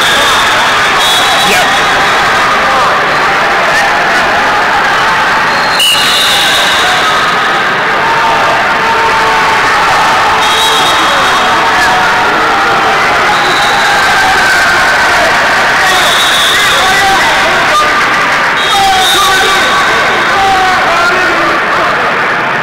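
Loud, steady hubbub of a wrestling arena crowd, many voices of coaches and spectators shouting over one another. Short high referee whistle blasts ring out about six times, and a sharp knock is heard about six seconds in.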